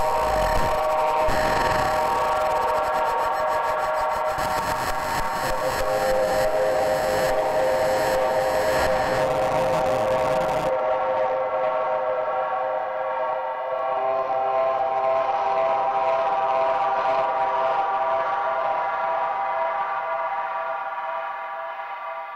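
Ambient electronic music: a held synthesizer chord of several steady tones, with a hissing high layer that cuts off abruptly about eleven seconds in, the chord then fading out toward the end.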